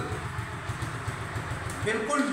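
Crown CD70 motorcycle's small single-cylinder four-stroke engine idling with a steady, rapid low putter.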